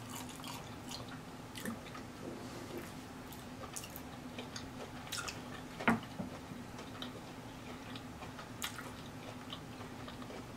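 Close-miked wet chewing of a mouthful of cheese-sauce-covered, hot-Cheetos-crusted turkey leg: scattered smacks and clicks, with one louder smack about six seconds in. A faint steady hum sits underneath.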